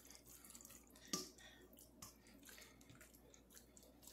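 Near silence, with faint soft wet sounds of seasoned chicken pieces being pushed with a spoon from a metal mixing bowl onto a lined sheet pan, and a brief knock about a second in.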